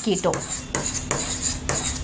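Chalk writing on a blackboard: a quick, irregular run of taps and scrapes as words are written.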